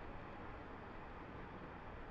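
Faint, steady hiss of room tone and microphone noise, with no distinct sound events.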